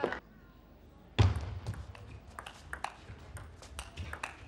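Table tennis ball being served and rallied: a loud thump about a second in, then sharp clicks of the ball off bats and table about every half second.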